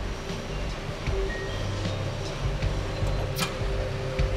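Tractor engine running steadily under hydraulic load, with a steady hydraulic whine as the post driver's side-shift cylinder moves the machine across. A couple of light clicks come about three and a half seconds in.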